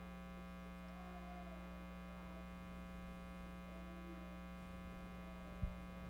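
Steady electrical mains hum in the church sound system, with a brief low thump near the end.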